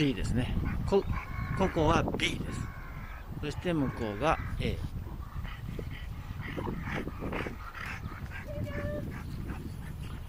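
Dogs whining and barking in high, wavering cries, over a steady low rumble.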